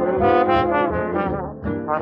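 Big-band jazz orchestra's brass section playing held chords, from a 1946 78 rpm V-Disc recording, the sound cut off above the upper treble. The chords shift about halfway through and dip briefly near the end before the next phrase.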